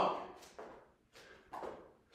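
Hands and feet being placed on rubber gym flooring during a slow bear crawl: about three soft taps and shuffles, the loudest about halfway through.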